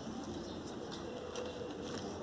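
A bird cooing softly in low, drawn-out notes, with a few faint clicks and rustles from hands working the potting mix.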